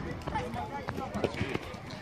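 Children's voices calling out, with a few sharp thuds of footballs being kicked; the loudest kick comes a little past the middle.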